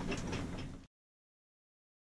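Low background noise in a boat cabin that cuts off abruptly under a second in, leaving complete silence.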